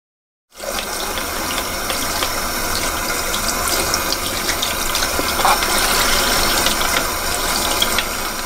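A steady, loud rushing noise with faint scattered clicks, starting abruptly about half a second in after silence.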